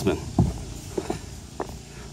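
Footsteps on a dock walkway, about three steps half a second apart.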